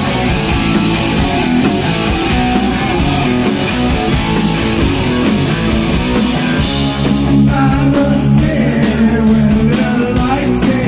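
Live rock band playing loud and steady, with electric guitars, bass guitar and a drum kit.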